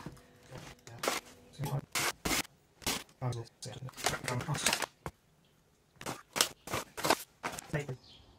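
Irregular short clicks and taps from handling a small glass jar on a pocket scale while brewing salts are weighed out.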